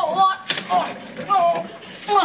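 A person's voice in short phrases, with a single sharp knock about half a second in.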